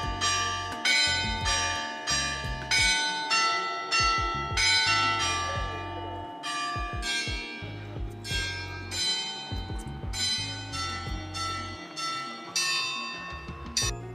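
Church bells ringing: a steady run of strikes on bells of different pitches, about one or two a second, each ringing on into the next.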